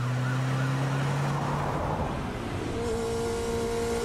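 Chase-scene soundtrack of a music-video trailer: a steady low drone and held tones over vehicle noise, with a new higher held tone coming in about three quarters of the way through.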